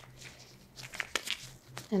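Soft rustling and a few small clicks from gloved hands handling a scent sample bottle, with a woman's voice starting near the end.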